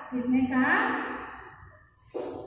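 A woman's voice making one drawn-out, wordless vocal sound that trails off and fades away over about a second.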